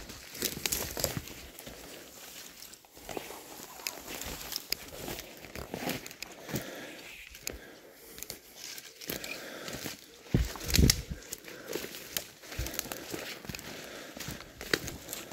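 Footsteps through dry brash and dead twigs on a conifer forest floor, with twigs crackling and snapping underfoot at an uneven pace. A louder thump comes about ten and a half seconds in.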